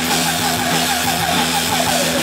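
Garage rock band playing live: electric guitars and drums, with a high guitar line wavering quickly up and down about six or seven times a second over steady lower held notes.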